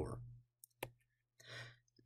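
A faint pause between spoken sentences: one short click, then a soft breath in just before speech resumes.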